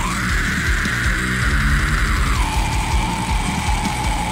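Heavy metal music: a loud, dense band with a long held high note that steps down in pitch about two and a half seconds in.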